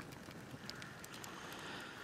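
Small fire crackling in a metal burn barrel, with scattered sharp pops.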